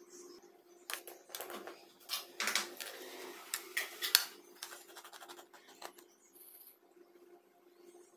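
Kitchen-knife and handling noises while preparing boneless fish fillets: scraping and rustling from the plastic tray and the knife on a ceramic plate, with irregular clicks. The densest scraping falls in the middle and ends in a sharp click a little past halfway.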